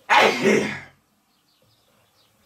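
A man clearing his throat: one loud, harsh burst lasting under a second, then quiet.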